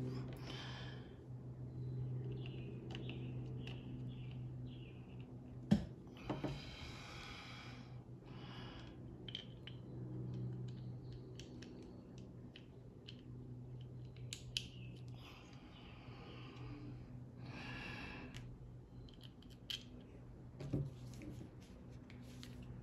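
Small sharp clicks and short rustles of hands handling metal and plastic parts as a paintball marker's selector switch is fitted into its trigger frame, with the loudest click about six seconds in. A steady low hum runs underneath.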